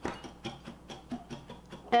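Wire whisk stirring dry cocoa powder and sugar in a ceramic bowl: quick, regular clinks of the wires against the bowl's side, with a light scraping.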